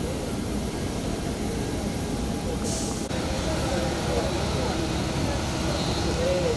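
Steady low rumble of airport ground noise with indistinct voices murmuring underneath. A short hiss sounds about halfway through.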